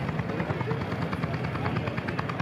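Vintage single-cylinder hot-bulb tractor engine, Lanz Bulldog type, idling with a rapid, even beat. People talk in the background.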